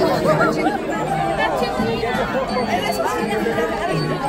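Crowd of people chattering, many voices talking over one another at once.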